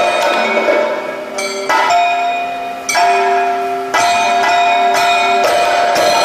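Kathakali accompaniment music carried by bell-metal percussion. Metal is struck every second or so, and each stroke rings on with steady tones until the next.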